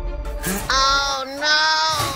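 A high-pitched wailing cry held in two long notes with a short break between, starting about a third of the way in, following a syringe jab to the thigh.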